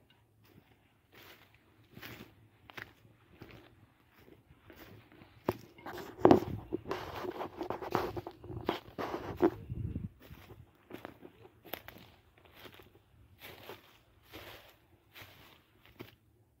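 Footsteps crunching and rustling through dry cut grass and brush, a step roughly every second. The steps get louder about a third of the way in for a few seconds, with a held low hum under them, then go back to lighter steps.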